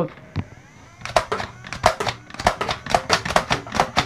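A battery-powered Nerf flywheel blaster: its motor starts with a whine and spins up, then about a second in a rapid, even run of clicks begins, some four or five a second, as the blaster cycles and fires darts.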